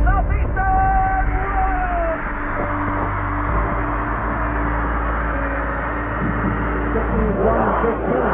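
Football stadium crowd cheering in a steady roar, with one long held voice call that falls slightly in pitch in the first two seconds.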